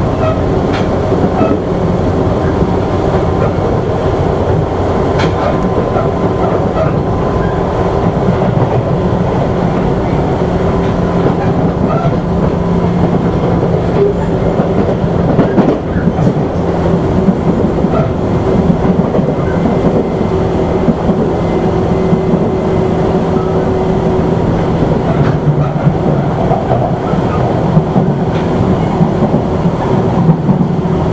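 Tobu 8000 series electric train running at steady speed. The traction motors and gears give a steady hum under the running noise, and the wheels click over rail joints from time to time.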